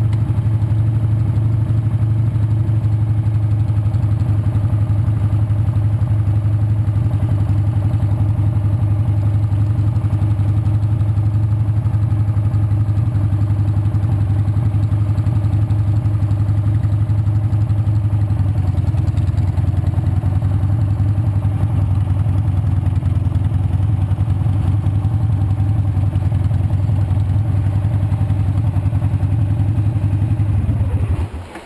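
Motorcycle engine running at a low, steady pace, a deep even drone heard from on the bike as it rolls slowly along.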